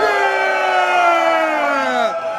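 Several men's voices holding one long shouted "yeah" together, their pitches sliding slowly down.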